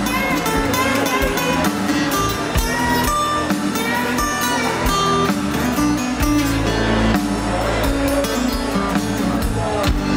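Live rock band playing an instrumental passage led by guitars, over bass and drums, with no singing.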